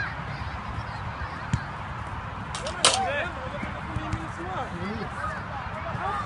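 A football struck sharply just before three seconds in, the loudest sound, with a smaller knock about a second and a half in, over a background of distant shouts and voices from players around the pitch.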